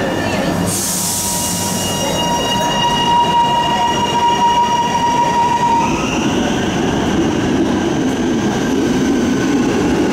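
Electric suburban train pulling out along the platform. There is a hiss near the start, then a steady electric whine from the traction equipment, which shifts to higher tones about six seconds in as the train gathers speed.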